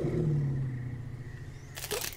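Anime episode soundtrack: a low, slightly falling drone that fades out over about a second and a half, followed by a few sharp clicks near the end.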